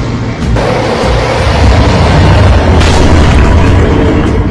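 Dramatic film-score music with booming, rumbling sound effects, growing sharply louder about half a second in and then staying loud with a heavy low rumble.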